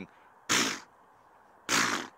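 A man imitating a topi's alarm snort: two short, sharp snorts a little over a second apart. In the topi, this snort warns other animals that a predator is about.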